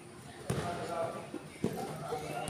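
A futsal ball thumping twice, about a second apart, as it is kicked or bounces on the court, with voices in the background.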